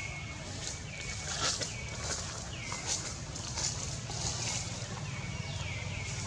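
A short high animal call repeated about once a second, each call dropping in pitch and then held briefly, with faint clicks and a low steady rumble underneath.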